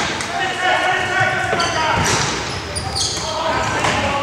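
Indoor hockey play in an echoing sports hall: sharp clacks of sticks striking the ball, about two and three seconds in, among players' voices calling out.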